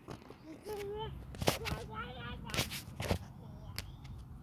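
Two short, wordless, high-pitched voice sounds, with several sharp knocks and clicks from the phone being handled close to the microphone.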